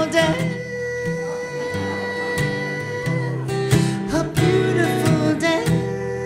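Solo steel-string acoustic guitar, strummed chords left to ring out between strokes, with a sung line trailing off right at the start. It is the closing guitar passage after the last sung words.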